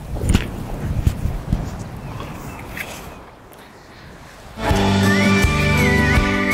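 Soft knocks and rustling as a backpack is lifted and handled on sand, fading out over the first few seconds. About four and a half seconds in, music starts loudly, a held melody over a steady low accompaniment.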